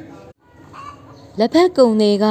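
Speech only: a narrator reading a text aloud in Burmese, with a brief pause about a third of a second in and louder, strongly rising and falling speech from near the end.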